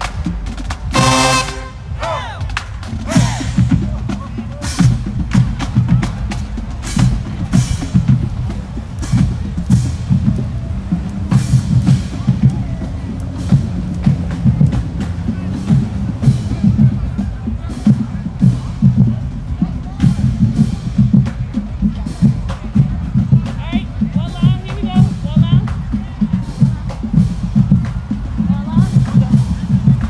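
HBCU marching band: a short brass chord about a second in, then the drumline plays a steady marching cadence of bass drum and snare beats.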